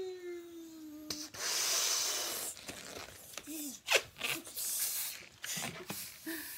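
A long white 260 twisting balloon being blown up by mouth: two long rushes of breath, about a second and about four and a half seconds in. A short falling hum of voice comes at the start.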